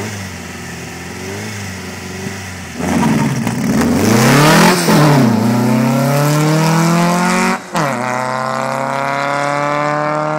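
A 2276 cc air-cooled VW flat-four on twin Weber 48 IDA carburettors with an FK-44 cam, in an oval-window Beetle, idles and blips at the line, then launches hard about three seconds in. It revs up through the gears: the pitch drops at a shift near five seconds and again near eight seconds, and climbs after each.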